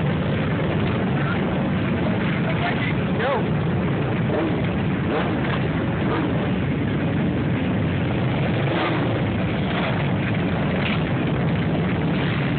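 Many motorcycle engines, sport bikes and cruisers together, running at idle and low speed as a large pack moves off slowly, a steady dense engine noise throughout.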